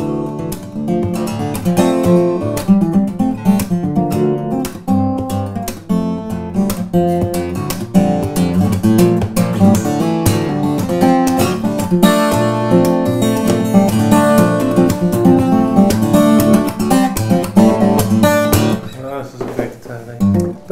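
Lowden F-model acoustic guitar with a cedar top and rosewood back and sides, played fingerstyle: a continuous piece of plucked bass notes and chords with sharp note attacks, easing off briefly near the end.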